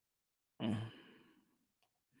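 A man's short sighing "mm" about half a second in, trailing off over the next second; otherwise near silence.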